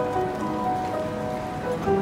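Upright piano played by hand: a softer, sparser passage of held notes, with a louder, fuller chord struck near the end.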